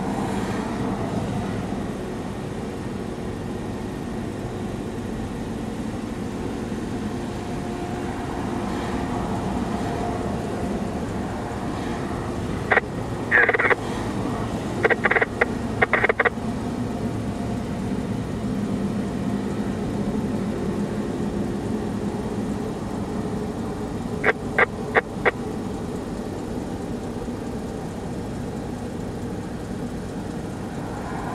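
Steady low hum of an idling vehicle engine, broken twice by short clusters of sharp chirps or clicks: four or five about halfway through and three or four about three-quarters of the way through.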